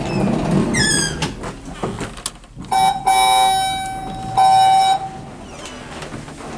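Schindler traction elevator: the sliding door moving, with a short squeak about a second in, followed by two flat electronic beeps from the elevator. The first beep lasts about a second and the second is shorter, near the end.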